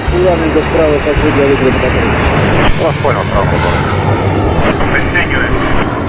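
Jet engines of a Sukhoi T-50 (Su-57) fighter flying a display overhead: a loud, steady rush of engine noise, with voices heard over it.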